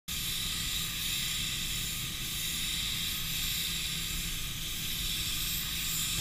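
Compressed air hissing steadily from a paint spray gun as it atomizes paint, over the low, even hum of a downdraft spray booth.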